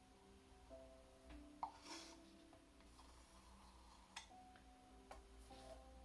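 Very faint background music of soft held notes that change pitch every second or so, with a few light clicks from an ice cream stick scraping the last acrylic paint out of a plastic cup.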